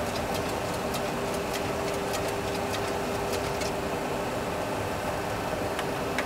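Steady cockpit noise of a Boeing 737 Classic full flight simulator on approach: an even rush with a constant mid-pitched hum, and a few faint clicks.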